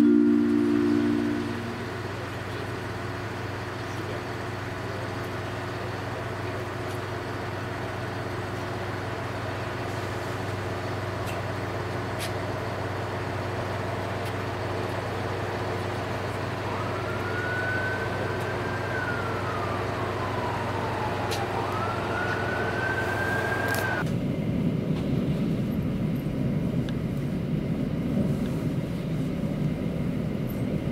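A freight train hauled by an ÖBB electric locomotive runs through the station, its steady hum joined by an electric whine that rises, falls and rises again. Near the end the sound cuts to the low rumble of riding inside a moving passenger train.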